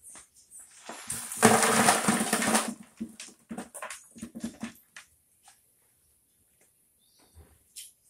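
Coarse bark and grit left in a wooden-framed wire-mesh soil sieve being tipped and knocked out into a plastic bucket: a loud rattling pour lasting about a second and a half, followed by a few scattered knocks.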